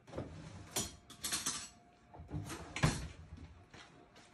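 A few short knocks and scrapes as a metal bundt pan is handled, with quiet gaps between them.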